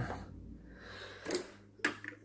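Quiet handling at a small digital pocket scale over a faint steady low hum: a brief soft rustle a little past halfway, then one sharp light click near the end as a hand works the scale.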